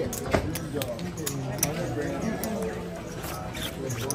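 Casino chips clicking against each other as they are handled and stacked by hand, with irregular sharp clicks throughout, over a murmur of voices.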